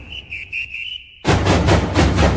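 A shrill whistle sounds a few short blasts and then one held note, cutting off just over a second in; after a brief gap, music with drums and percussion starts loudly.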